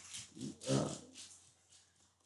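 A man's drawn-out, hesitant filler "uh" in the first second, spoken while he thinks.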